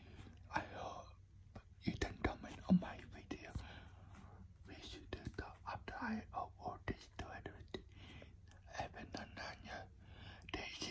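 A person whispering close to the microphone, with a few small clicks from handling.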